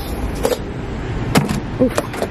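A boxed two-piece set of frying pans being handled and set into a shopping cart: two sharp knocks, about half a second in and again near the middle, over a steady low background hum.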